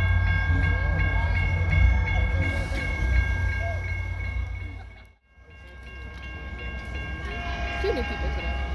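A Caltrain train runs with a low rumble while a bell rings in quick, even strokes, typical of a level-crossing warning bell. The sound cuts out about five seconds in, then returns with the bell. A train horn comes in near the end as another train approaches.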